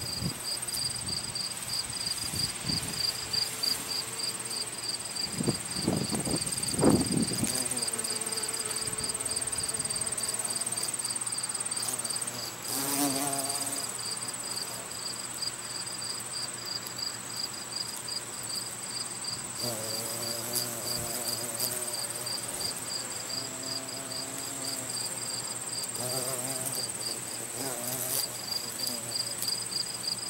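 Crickets chirping steadily, about two chirps a second, over a continuous high-pitched insect trill. A carpenter bee's low buzz comes and goes several times as it works the flowers.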